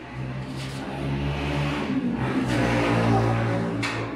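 A motor vehicle engine running, its low hum getting louder from about a second in. A couple of short sharp clicks are heard over it.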